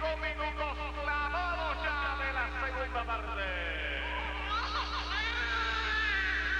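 Several voices singing, over a steady low hum.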